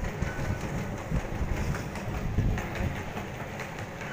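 Low, uneven rumble of an underground metro station concourse, heard through a camera carried by someone walking.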